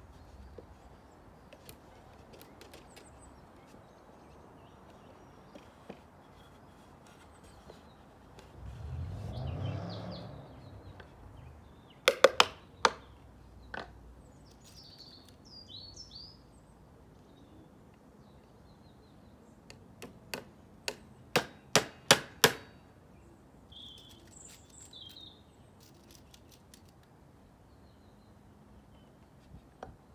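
Hammer blows on a wooden bird box: a few sharp strikes about halfway through, then a quick run of about eight strikes a little later. A brief low rumble comes shortly before the first strikes.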